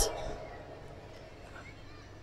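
A pause in amplified speech: the man's voice trails off in the echo of the public-address system over about half a second, leaving a faint low hum and quiet background noise.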